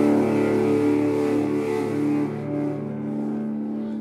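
An amplified electric guitar chord struck hard just before and left ringing. It holds as a steady, sustained drone that slowly fades.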